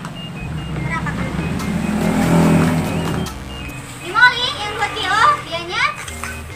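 A motor vehicle goes by on the street, its noise swelling to a peak about two and a half seconds in and cutting off abruptly just after three seconds, over steady background music. In the last two seconds, quick high-pitched sliding voice-like sounds take over.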